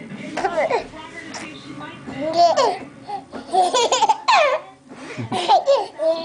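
A baby laughing and squealing: a string of short, high calls that sweep up and down in pitch, with brief pauses between them.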